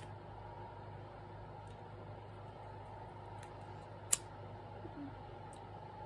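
A handheld lighter being flicked: one sharp click about four seconds in, over a steady faint low hiss, as nylon cord ends are burned to seal them.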